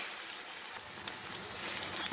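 Chopped onions sizzling steadily in hot oil in a stainless steel pan, with a faint tick or two from the spatula.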